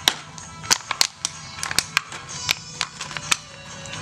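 Clear plastic blister packaging of a motorcycle piston kit crackling and snapping as it is pried open by hand, in irregular sharp clicks, over background music.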